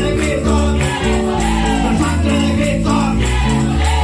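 Live church worship music: a man singing a Spanish-language chorus into a microphone over a Roland Juno-DS keyboard and guitar, with a steady rattling percussion beat.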